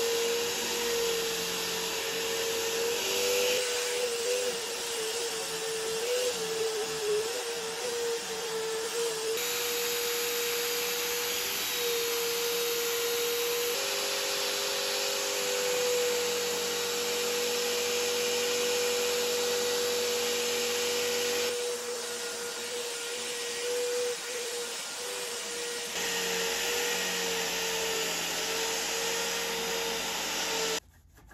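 Electric drill in a bench holder spinning a polishing wheel, its motor holding a steady whine that wavers and dips briefly as brass parts are pressed against the wheel, with the rasp of metal being buffed underneath.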